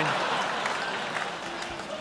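Audience applause that slowly dies away.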